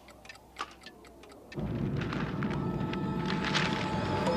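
Quiet ticking, like clocks, then about a second and a half in a sudden loud, steady rumbling noise cuts in and keeps going.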